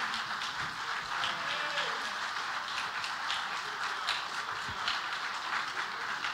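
Church congregation applauding steadily as the choir stands to be recognized.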